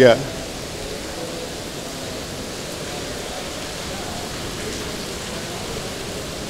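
Steady hiss of heavy rain falling.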